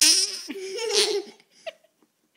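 A child laughing loudly in one burst of about a second and a half, then a brief faint sound near the end.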